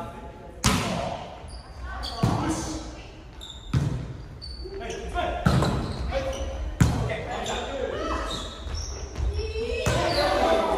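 A volleyball being struck again and again in a rally, a sharp slap about every second and a half, echoing around a gymnasium, with players calling out between the hits.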